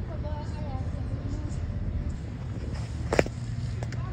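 Outdoor background: a steady low rumble, with faint wavering voices in the first second and a half and one sharp click a little over three seconds in.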